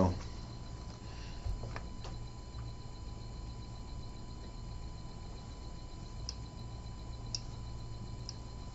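Quiet room tone: a steady low hum with faint steady high-pitched tones, broken by a few soft clicks between one and two seconds in and two faint chirps near the end.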